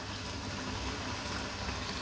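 Cream and tomato sauce simmering quietly in a wok on a gas burner, a low, steady bubbling hiss.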